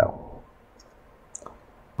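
Two faint clicks close together about a second and a half in, from a computer mouse or key advancing a presentation slide. Otherwise quiet room tone.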